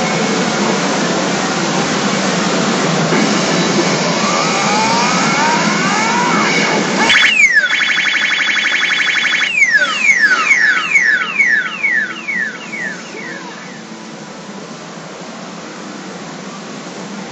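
Pachinko machine's electronic music and effects over a dense steady din. About seven seconds in the din drops suddenly and a bright, rapidly repeating chiming jingle plays for a couple of seconds, followed by a run of falling-pitch sweeps that fade out: the machine's fanfare as the reels settle on a winning line of three 5s.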